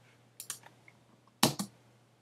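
Computer keys clicking: two quick pairs of sharp clicks, one about half a second in and a louder pair about a second and a half in, over a faint low hum.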